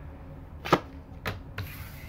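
Three sharp taps of a tarot card and deck against the tabletop as a card is laid down, the first the loudest, followed near the end by a brief sliding rustle of card on the table.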